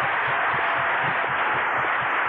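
Audience applauding: a steady spread of clapping with no voice over it.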